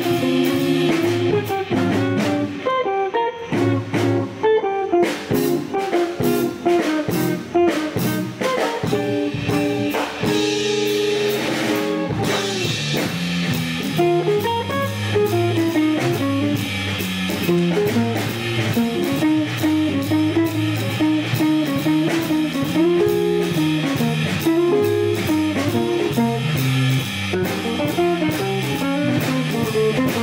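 Jazz trio playing a tune: archtop electric guitar leading with single-note lines over organ and drum kit. The band thins out briefly about three seconds in, then plays on fully.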